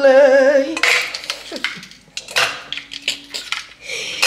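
Ice cubes clattering as they are popped out of a plastic ice-cube tray and dropped into a tall plastic jug: a run of sharp, uneven clicks and knocks. A woman's sung note with vibrato fills the first second.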